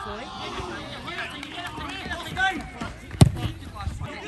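Players and spectators shouting at a football match, several voices overlapping. A single sharp thud about three seconds in, the football being struck.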